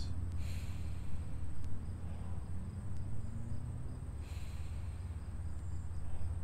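A man breathing slowly and deeply: one long breath about half a second in and another about four seconds later, over a steady low rumble.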